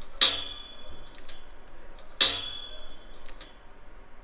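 The lower tension spring of an Influencer microphone boom arm, a budget scissor-style arm, twangs twice as the arm is moved. Each twang is a sharp hit with a ringing tone that fades within about half a second. It is a 'sprung noise': the spring sits too close to the arm's metal and flings around against it.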